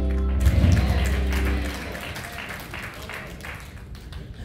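A held closing chord with a deep bass note, cutting off a little under two seconds in, as a congregation starts applauding about half a second in; the clapping thins out toward the end.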